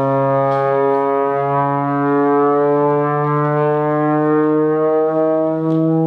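Trombone holding one long low note that slides slowly upward in pitch, without a break.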